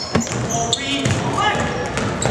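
A basketball bouncing on a hardwood gym floor during play, with sneakers squeaking briefly and voices from players and the crowd.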